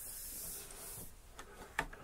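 Faint hiss for about a second, then a few short clicks, the loudest shortly before the end.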